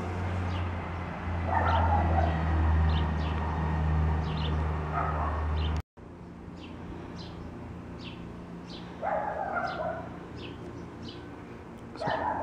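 Animal calls in the background: repeated short, high chirps, with louder calls about a second and a half in, near five seconds and near nine seconds. A low rumble on the microphone fills the first half and stops abruptly at a cut about six seconds in.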